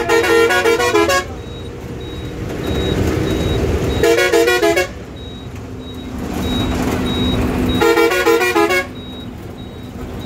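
A heavy vehicle's horn sounding from inside the driver's cab in three bursts of about a second each, each a rapid warble between two pitches, over the running engine. Between the honks a faint high beep repeats about twice a second.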